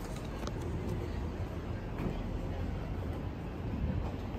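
Outdoor street ambience: a steady low rumble of distant traffic.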